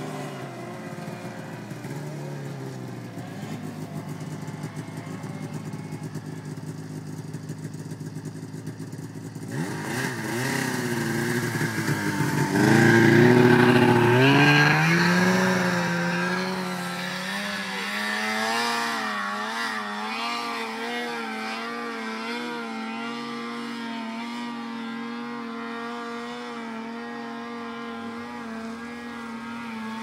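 Snowmobile engines: a distant snowmobile running with its pitch rising and falling, then about ten seconds in a nearby snowmobile revs up and is loudest for a few seconds before settling into a steady drone that wavers as the throttle changes.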